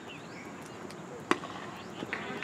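A cricket ball striking at the batsman's end: one sharp knock about a second and a quarter in, over a faint outdoor background.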